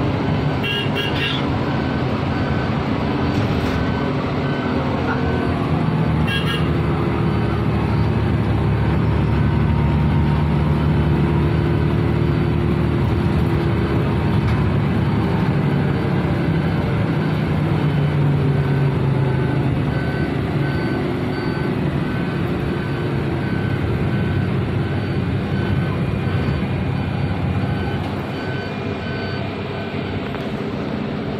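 Bus engine and road noise heard from inside the cabin while driving through city traffic, the engine note rising and falling as the bus speeds up and slows, easing off near the end.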